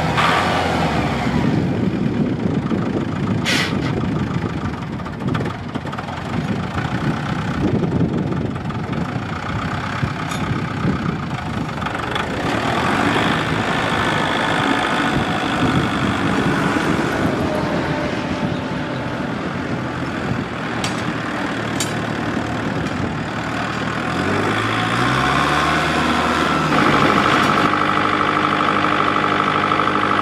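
Ford 1920 compact tractor's four-cylinder diesel engine running as the tractor is driven, with a few sharp clicks. Near the end the engine's pitch climbs and it settles into a steadier, louder run with a high whine over it.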